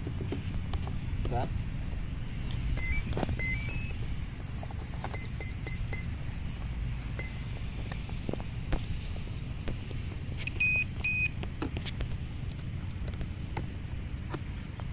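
Electronic speed controller of an electric RC plane beeping through its motor as the flight battery is connected: a rising run of short tones about three seconds in, a few single beeps after, then two loud beeps, typical of the ESC signalling it is armed. Small clicks from handling the parts in the fuselage bay.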